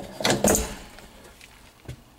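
A few sharp clicks and knocks within the first half second, fading to a low background, with one small click near the end.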